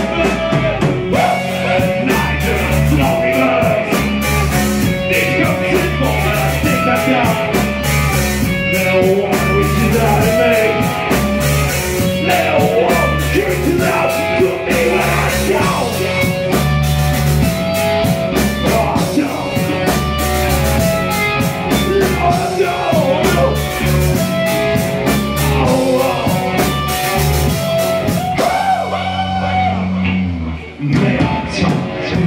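Live blues-rock band playing loudly: distorted electric guitars over a driving bass line and drum kit, with a male singer's voice at times.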